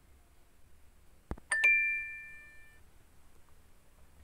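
A click, then a bright two-note chime that rings out for about a second: an online quiz game's correct-answer sound.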